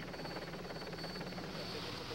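Steady engine drone with a hiss of wind and road noise: the race ambience under a televised bike race.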